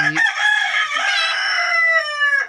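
A rooster crowing: one long, drawn-out crow that dips in pitch near the end.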